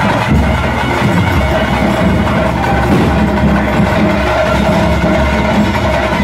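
Loud traditional percussion music, drums beating steadily under a held high tone.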